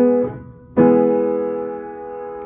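An acoustic piano playing an E major chord, struck once at the start and again, louder, about three quarters of a second in, then left to ring and fade.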